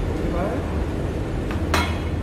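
Tableware at a hotpot table: a light tick, then one sharp metallic clink that rings briefly, about a second and a half in, over a steady low background hum.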